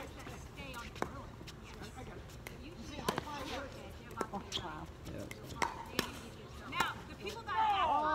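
Sharp clacks of pickleballs being struck and bouncing, about seven at uneven spacing, over faint background talk.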